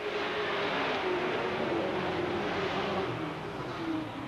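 A pack of dirt-track Sportsman stock cars racing at speed, many engines running hard together in a steady, dense blend, with one engine note sliding slowly lower.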